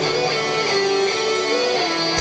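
Heavy metal band playing live through a stadium PA: electric guitars play a stepping melodic line with little low end under it.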